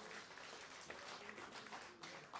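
Faint audience applause, a dense patter of hand claps.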